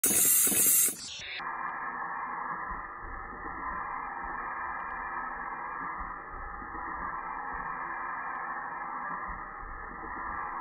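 Stamping press running a progressive die for Faston connectors, heard as a steady, even hiss. A louder, fuller rush of noise fills the first second before it settles.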